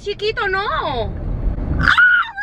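A girl's drawn-out whiny voice rising and falling in pitch, over the low rumble inside a car cabin, then a sudden loud shriek near the end.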